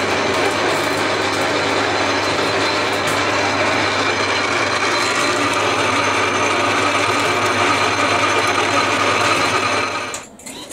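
Metal lathe running steadily, spinning a spool to wind copper-coated MIG welding wire onto it: a continuous mechanical running noise over a low motor hum.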